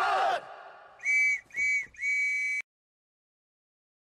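A whistle blown three times, two short blasts and a longer third, each on a steady high pitch. The sound cuts off abruptly after the third blast.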